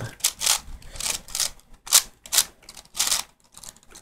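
Layers of a plastic 6x6 V-Cube being turned by hand through an algorithm: a quick, irregular run of clicks, with a short pause near the end.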